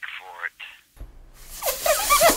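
A voice for the first half second or so, then a brief gap, then a loud hiss with a gliding, warped voice over it near the end.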